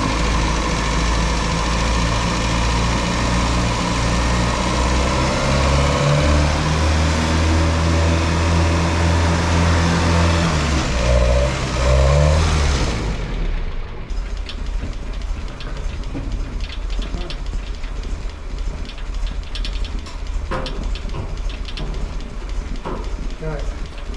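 1955 Land Rover Series 1 107's four-cylinder petrol engine running smoothly on a new Weber carburettor, its revs raised for a few seconds in the middle and then dropping back. The engine sound ends abruptly about thirteen seconds in, and quieter scattered clicks and knocks follow.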